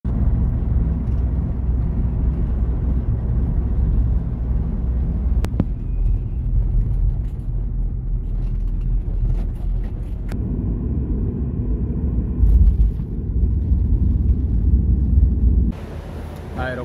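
Steady low road-and-engine rumble heard from inside a moving vehicle, with two brief sharp clicks partway through.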